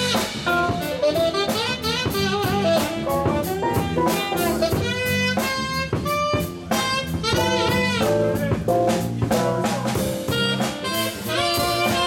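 Live jazz combo playing: a saxophone carries a flowing melodic line over electric bass guitar and a drum kit keeping a steady beat.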